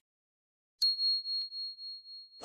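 A single high, clear bell ding, the notification-bell sound effect of a subscribe-button animation. It is struck about a second in and rings on with a wavering, slowly fading tone.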